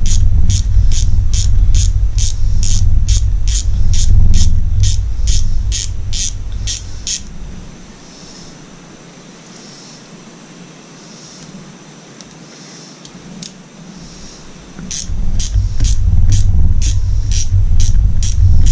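A small socket ratchet clicking steadily, about three clicks a second, as bolts are backed out, over a low rumble. The clicking stops for several seconds in the middle and starts again near the end.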